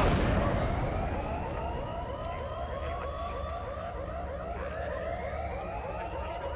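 Sci-fi film sound effects: a loud crash right at the start, then a warbling siren-like tone that pulses about four times a second while a higher whine slowly rises beneath it.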